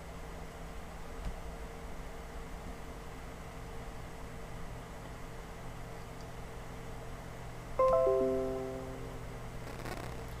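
Steady low hum of the running PC, then about eight seconds in a Windows 10 system chime from the computer's speaker: a short run of notes stepping down in pitch that fades over about a second, sounding as the system sets up its drivers.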